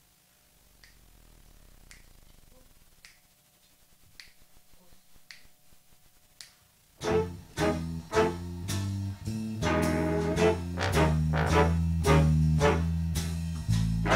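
Finger snaps counting off the tempo, about one a second, then about seven seconds in a jazz big band comes in together: guitar, bass and drums with brass and saxophones, playing a swing chart.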